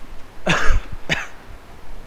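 A man coughs twice, a longer cough about half a second in and a shorter one just after.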